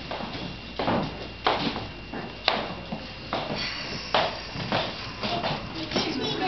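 Footsteps and scattered knocks on a hardwood floor, about five irregular taps with a sharp click about two and a half seconds in, over steady room noise.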